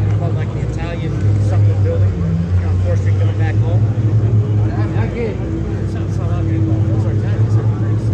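Steady low drone of an idling engine, under the indistinct chatter of several people talking.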